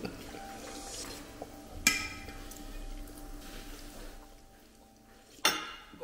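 Tableware at a dinner table: one ringing clink about two seconds in and a sharp knock shortly before the end, over a faint steady hum.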